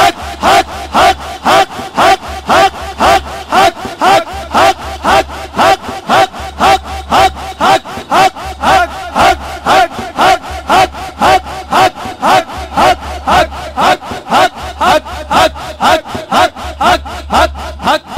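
Men's voices chanting a rhythmic zikr through the sound system, a short forceful syllable repeated steadily about twice a second over a steady held tone.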